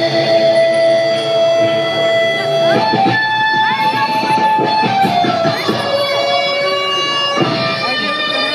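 Electric guitar lead played live: one long sustained note for the first few seconds, then fast runs of notes with upward string bends and held notes.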